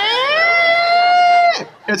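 A man's voice making one long, high squeal that rises and then holds before cutting off about a second and a half in, a mouth-made imitation of the lamp squeaking as a halogen bulb is forced into it.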